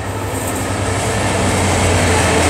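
Freightliner Class 66 diesel locomotive passing close. Its two-stroke V12 engine makes a steady low drone that grows gradually louder as the locomotive draws level.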